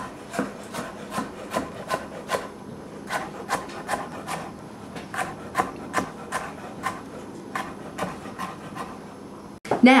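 Chef's knife dicing carrot sticks on a wooden cutting board: a steady run of chops, about two or three a second, each blade stroke cutting through the carrot and striking the board.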